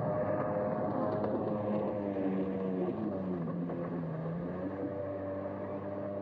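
Jet ski engine running steadily. Its pitch sags about three seconds in and comes back up near five seconds.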